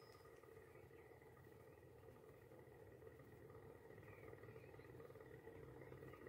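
Very faint, distant drone of a paramotor's engine and propeller in flight, a steady hum that grows slightly louder after about four seconds; otherwise near silence.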